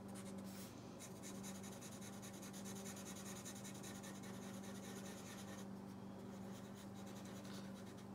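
Black Sharpie felt-tip marker scribbling on textured watercolor paper, rapid back-and-forth strokes filling in a small shape. The strokes are densest for the first few seconds and grow fainter about two-thirds of the way through.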